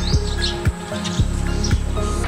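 Background music with sustained tones and a steady beat of about two strikes a second, with birds chirping over it.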